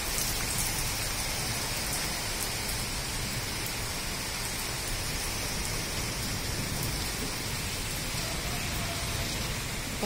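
Heavy rain falling steadily on a paved courtyard: an even hiss with scattered faint drop ticks.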